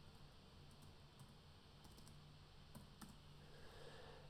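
Near silence: room tone with a few faint computer keyboard clicks, most plainly about three seconds in.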